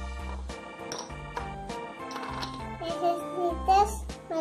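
Children's background music: steady notes over repeated bass notes. A high child's voice comes in about three seconds in.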